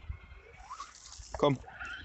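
Faint whine of an electric RC monster truck's motor over a steady low wind rumble on the microphone, the pitch sliding near the end.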